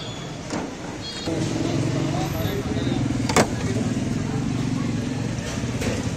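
A vehicle engine, close by, running steadily from about a second in, with a sharp knock midway and voices over it.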